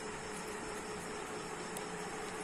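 Low, steady background noise: an even hiss with a faint steady hum and a thin high whine, with no distinct events.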